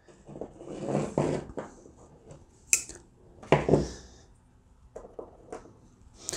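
Small parts from a Watts 009 backflow preventer's check assembly, a coil spring and check disc, being handled and set down on a tabletop: light rustling, a sharp click about three seconds in, then a dull thump, and a few faint clicks near the end.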